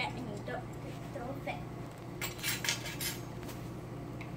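Clinks and scrapes of metal measuring spoons against a plastic cup as slime activator is added and stirred in, with a cluster of quick clicks from about two seconds in.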